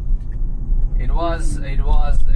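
Steady low road rumble inside an electric car's cabin as it speeds up. A man's voice repeating "no, no" comes in about a second in.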